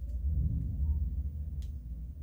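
Low, steady background rumble with a single faint click about one and a half seconds in.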